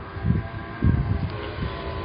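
Outdoor street noise on a handheld microphone: a few low rumbling bumps over a faint steady hum.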